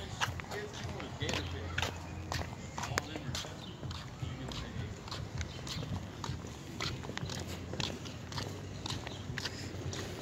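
Footsteps on a concrete sidewalk mixed with the knocks and rubs of a handheld phone being carried, heard as irregular sharp ticks, two or three a second, over a low steady rumble.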